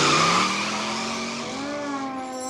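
Cartoon car peeling away: a hiss of tire squeal with an engine note rising in pitch, fading over about a second and a half. Music comes in near the end.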